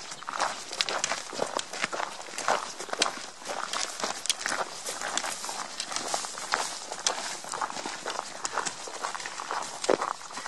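Hikers' footsteps crunching on a dirt and gravel trail, a steady run of irregular short steps and taps.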